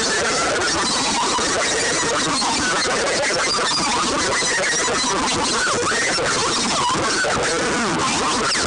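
Electric guitar played as a chaotic noise freakout: a dense, unbroken wall of noise at a steady level, with many short squealing notes sliding up and down.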